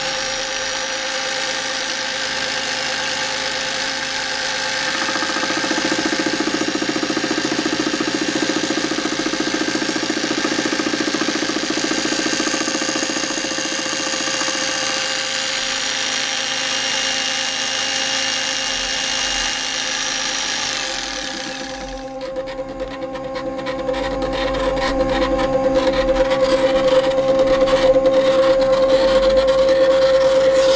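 Homemade CNC mill with a single-insert face-milling cutter cutting a metal T-slot nut blank: a steady whine from the X2 mini mill spindle motor under a hissing, ringing cutting noise. About 21 seconds in the high cutting noise stops abruptly, leaving the motor tone and a rougher, lower rumble that grows louder toward the end.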